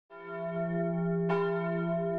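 Church bell ringing: a stroke right at the start and another a little over a second in, each left to ring on.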